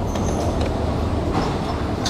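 Steady low rumble of a busy indoor market hall, with a few light clinks of dishes.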